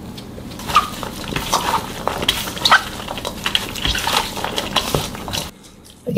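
Metal spoon clinking and scraping against a stainless steel mixing bowl, with irregular small clicks; it stops abruptly near the end.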